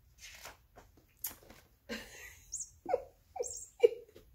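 Light rustling and handling noises, then a woman laughing in three short bursts near the end.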